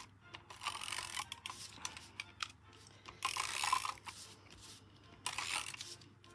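Patterned card-making paper sliding and rubbing against a white card base as it is positioned by hand, in three spells of rustling, the loudest about three seconds in.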